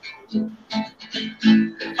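Acoustic guitar strummed in a steady rhythm, a few strokes a second, accompanying a song.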